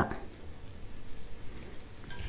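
Oil drizzled from a steel oil dispenser onto bread on a hot tawa, faintly sizzling.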